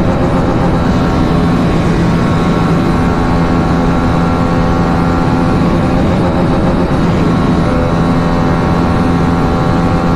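Hero Karizma XMR's 210 cc single-cylinder engine held at high revs near top speed, about 145 km/h, with a steady, unchanging drone. Wind rushes past the microphone over it.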